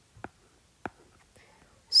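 Two faint, short taps of a stylus on a tablet's glass screen during handwriting, against near quiet; a voice starts speaking right at the end.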